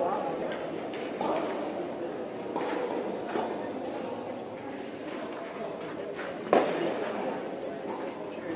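Tennis ball struck by rackets several times during a doubles rally, sharp pops with the loudest about six and a half seconds in, over background voices.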